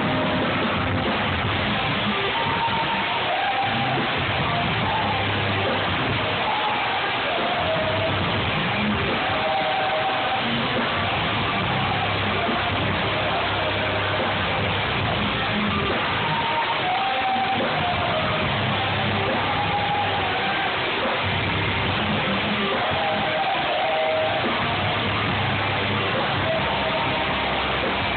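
A rock band playing live at a steady high volume, guitar to the fore, with no break in the music. It is picked up by a phone's microphone, so it comes across as a dense, dull wash with no top end.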